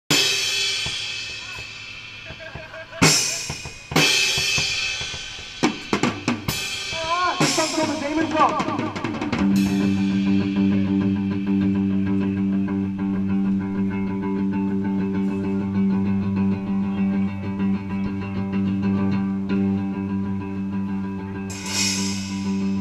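Rock band tuning up before a song: a drum kit plays a few loud cymbal crashes and drum hits, then an electric guitar slides in pitch. About ten seconds in, the guitar settles into a steady held note droning through its amplifier. Another cymbal crash comes just before the end.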